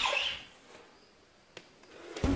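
Near silence after a brief high sound fades out in the first half-second, with one faint click shortly past the middle.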